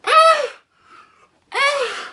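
A man's voice giving two short, high-pitched wordless cries about a second and a half apart, each rising and then falling in pitch.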